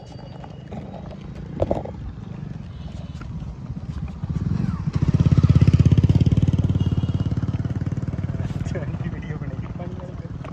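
An engine running with a rapid, even chug: it swells in about four seconds in, is loudest around six seconds, then slowly fades. A short knock comes earlier.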